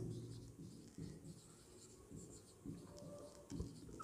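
Faint strokes of a marker pen writing a word on a whiteboard, a series of short soft scrapes.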